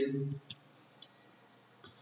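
A man's voice trails off right at the start, followed by a few faint, short clicks, about half a second apart at first, with near silence between them.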